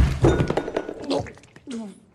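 A heavy thud right at the start, a blow landing as a man is knocked to a wooden floor, followed by a man's voice grunting and groaning over a faint film score.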